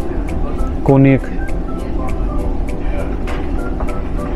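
Steady low rumble, typical of a ferry's engines droning through the ship, under faint background music.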